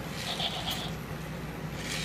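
Zoomer Dino robot toy's geared wheel motors whirring and rasping as it rolls and balances on the tile floor, with a short louder scraping rush near the end.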